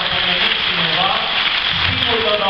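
Audience applauding steadily, with a man's voice heard over the clapping.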